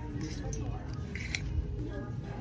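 Plastic clothes hangers clicking and scraping along a metal clothing rail as garments are pushed aside, in two short bursts, the first just after the start and the second a little over a second in, over a steady low hum.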